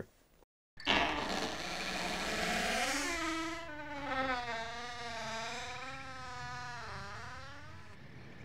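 Transition sound effect: after a brief silence, a dense rush of noise sets in, then a wavering tone with overtones dips and rises before easing off near the end.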